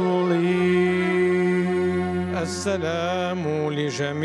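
Male cantor chanting a liturgical hymn solo. He holds one long steady note for about two seconds, breathes, then sings ornamented turns that slide up and down in pitch, over a steady low drone.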